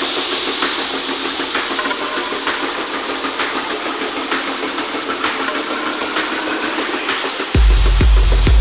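Techno track in a breakdown: the kick and bass are gone, and a noise riser sweeps steadily upward over rapid hi-hat ticks. About seven and a half seconds in, the kick drum and bass drop back in, louder, on a steady four-to-the-floor beat.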